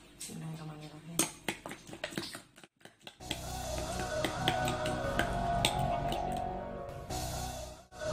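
A metal spoon clinking against a ceramic bowl while beaten egg is stirred. After a short gap about three seconds in, background music starts and carries on, with a few light clinks over it.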